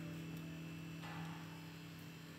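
An acoustic guitar's last strummed chord ringing out and slowly fading, over a steady low hum.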